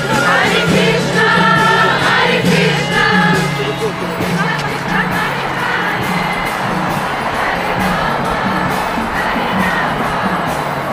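Kirtan chanting: many voices singing a devotional chant together as a group, over a steady percussion beat.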